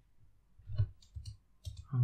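A few quiet, separate clicks of a computer mouse and keyboard as highlighted text is deleted in a text editor.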